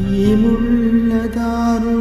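Song music with long, steady held notes, coming in louder at the start, in a gap between sung lines.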